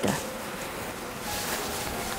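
A pause in the talk filled by a low, steady hum of room noise, with a soft rustle of silk saree fabric being handled in the second half.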